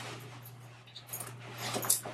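Faint rustling of a black moto jacket being shrugged on and adjusted, with light metallic jingling from its zippers and hardware: a soft clink about a second in and a slightly louder one near the end.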